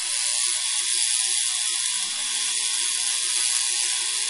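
Handheld Tesla coil switched on with a sudden start, then a steady, high hissing buzz of its high-voltage discharge as it drives the cathode ray tube.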